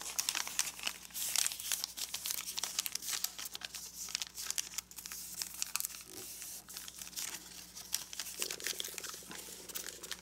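A sheet of kami origami paper crinkling and crackling as hands pleat it accordion-style along its existing creases and press the folds down: a dense, uneven run of small crisp crackles.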